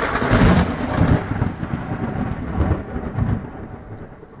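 A loud crack that runs into a long, low rumble and slowly fades.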